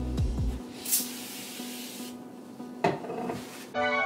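A hiss of cleaner spray lasting about a second, then rubbing as a cloth wipes a mirror, with a single knock near the end. Soft background music plays underneath.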